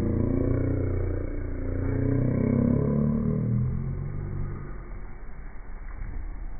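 A motor vehicle engine running, its low pitch rising and then falling before it fades out after about four and a half seconds.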